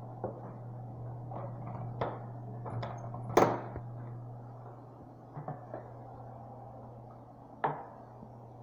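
Scattered knocks and clicks in a small tiled restroom, the loudest about three and a half seconds in and another near the end, over a steady low hum.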